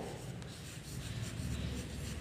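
Chalk writing on a chalkboard: faint, irregular scratching strokes as a word is written out by hand.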